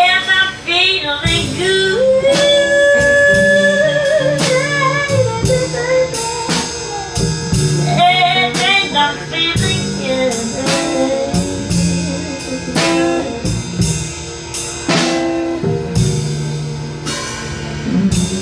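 A live band playing a slow blues-jazz song: a female singer's voice wavering with vibrato over guitar, bass and a drum kit keeping a steady beat.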